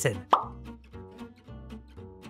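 One quick cartoon pop sound effect with a fast upward pitch sweep about a third of a second in, over light background music with a steady beat.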